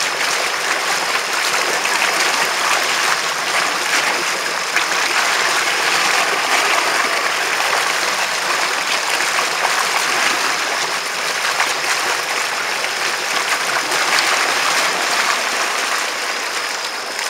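Steady rushing hiss of water thrown up in the jet wake of a Sea-Doo GTX personal watercraft under way.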